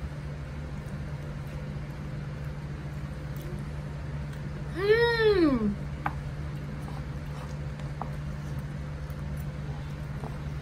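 A single short voiced call about halfway through, rising and then falling in pitch over about a second, against a steady low room hum.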